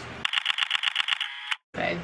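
Edited-in transition sound: a fast, thin run of evenly spaced clicks, about ten a second, with no low end, that cuts off abruptly into a moment of dead silence at a jump cut.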